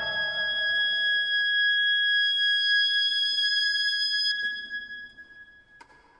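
Classical music for oboe and string orchestra. A full chord dies away in the first second while one high note is held on, steady and later with a slight waver, fading out in the last two seconds. A faint click comes just before the end.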